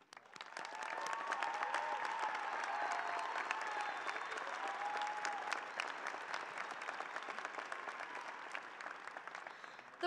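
Large crowd applauding. The clapping swells up within the first second, stays full for a few seconds, then gradually fades toward the end.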